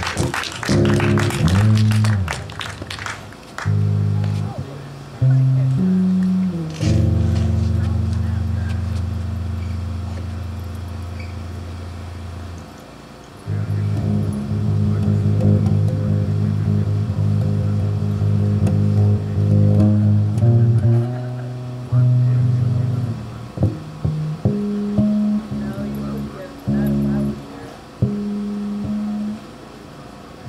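Electric bass guitar played live through an amplifier: long held low notes, some lasting several seconds, with shorter notes near the end.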